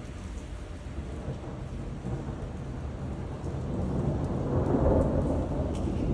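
Thunder rumbling over steady rain, swelling from about halfway and loudest near the end.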